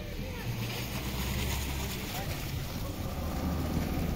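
Wind buffeting the phone microphone as a steady low rumble with hiss, with faint voices in the background.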